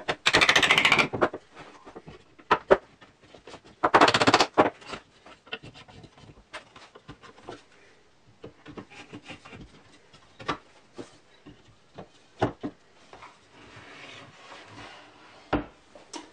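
Steel shafts being pushed into snug holes in wooden pantograph links, with two bursts of scraping about a second long, near the start and about four seconds in. Then scattered knocks and clicks as the wooden linkage is handled and folded.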